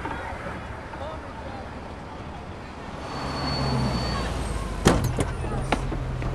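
A van pulling up in city street noise: its engine comes in as a low steady hum about three seconds in, with a short high squeal as it stops. A sharp clack a little before the end as the van's door is flung open, followed by a few smaller knocks.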